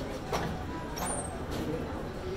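Steady low rumble of gym room noise with a couple of short, sharp clicks, about a third of a second and a second in, from the weight machine being worked.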